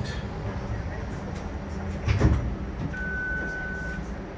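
Low steady rumble inside a TTC Flexity Outlook streetcar, with a single thump about two seconds in. A steady high-pitched beep sounds for about a second near the end.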